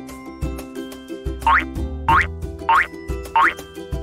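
Bouncy children's background music, with four quick upward-sliding 'boing' sound effects, one about every two-thirds of a second in the second half.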